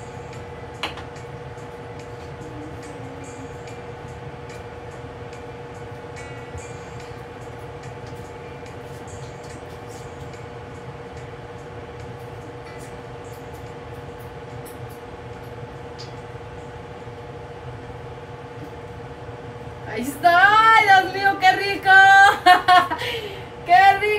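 Steady hum of a kitchen vent fan with a few constant tones, with a couple of faint clinks of a serving ladle on the pot. A woman's voice comes in loudly near the end.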